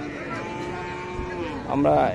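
A cow mooing: one long, level moo lasting about a second.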